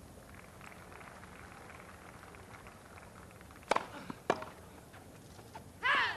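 A tennis ball struck hard by a racket twice, about half a second apart, a serve and its return, over a faint crowd hush on a grass court. A louder hit comes right at the end as the rally goes on.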